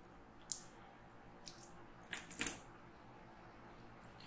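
Faint handling noises on a work mat: a few short soft clicks and rustles, one about half a second in and a small cluster a little after two seconds, as a roll of electrical tape and a taped battery pack are picked up and moved.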